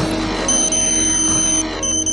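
A high electronic beep tone held for about a second, then starting again after a short gap near the end, over a steady low music drone: a computer targeting-display sound effect.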